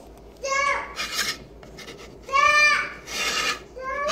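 A high-pitched voice makes short calls, about three in all, interleaved with two rasping, rubbing noises.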